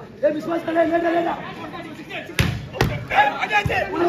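Volleyball being struck twice by players' hands in a rally, two sharp hits about half a second apart a little past halfway, among shouting voices from players and spectators, including one long drawn-out call near the start.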